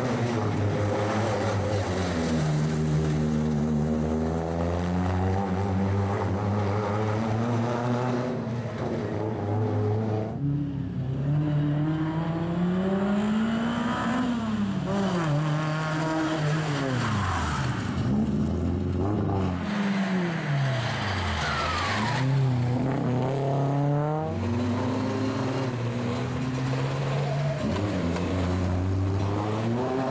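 Rally car engines revving hard as the cars drive a special stage, pitch climbing under acceleration and dropping at each gear change or lift, again and again throughout.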